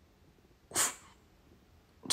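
One short, quick intake of breath close to the microphone, about three-quarters of a second in, in otherwise near silence.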